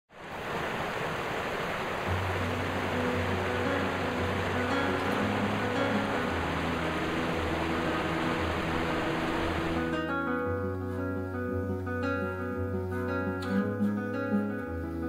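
Acoustic guitar music over the steady rush of water tumbling down a small stream cascade. The guitar comes in about two seconds in. The water sound cuts off suddenly about ten seconds in, leaving the guitar alone.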